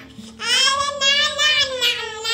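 A young girl singing a held, wavering melody, starting after a brief pause.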